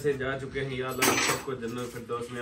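A man leading a dua aloud in a held, chant-like voice, with a short clatter of cutlery and dishes about a second in.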